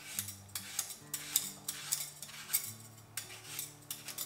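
A hand peeler scraping the skin off a green apple in a quick run of short rasping strokes, several a second.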